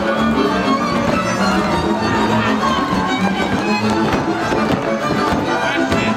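Hungarian folk dance music with a fiddle leading over a steady rhythmic accompaniment.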